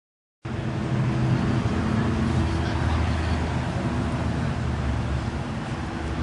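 Ferrari F40's twin-turbocharged V8 idling steadily, cutting in abruptly about half a second in.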